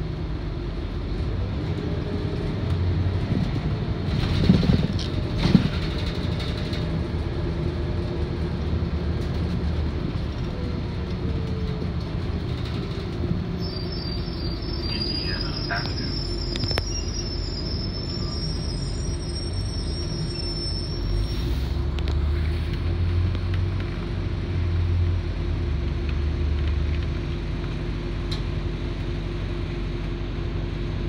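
Inside an RTS transit bus under way: steady diesel drone and road rumble, with a faint whine that rises and falls. Body rattles and knocks come a few seconds in, a thin high squeal runs for several seconds midway, and the low rumble swells near the end.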